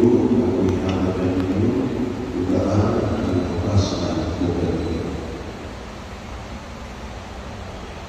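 A priest's voice at the lectern, echoing in a large church, falling silent a little past halfway.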